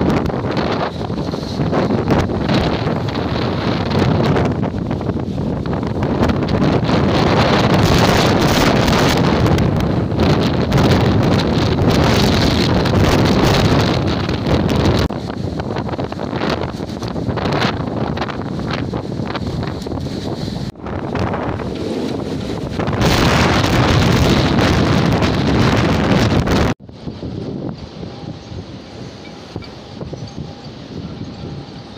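Strong wind buffeting the microphone over rough, whitecapped sea. About three seconds before the end the loud rush cuts off abruptly, leaving a much quieter wind.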